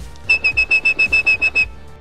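A man whistling a rapid train of short, identical high-pitched pips into a telephone handset, about ten in a second and a half. This is phone-phreak whistling: the pips mimic the telephone network's 2600 Hz signalling tone to pulse-dial a call with no equipment.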